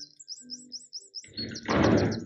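Small bird chirping in a quick run of short, high, rising-and-falling notes, about seven a second, through the first second. Then, over the last half-second or so, comes a louder rush of breathy noise.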